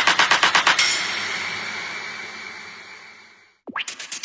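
Electronic dance music at a breakdown in a DJ mix. A fast roll of even drum hits stops about a second in, leaving a noisy wash that fades away to a moment of silence. A falling sweep and a new quick rhythmic pulse then come in near the end.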